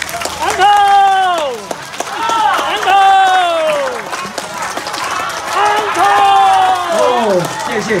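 Audience clapping after a string orchestra's performance, with three or four long shouts of cheering from the crowd, each sliding down in pitch.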